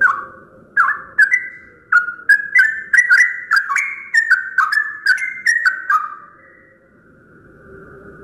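Yellow-vented bulbul singing: a quick run of about fifteen short, jumping chirped notes lasting about six seconds, then stopping.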